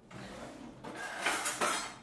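Kitchen utensils and dishes clattering and clinking as they are shifted about on a countertop, louder in the second half.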